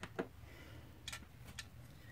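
A few faint, light clicks and taps of small craft items being handled, four short ticks spread over two seconds.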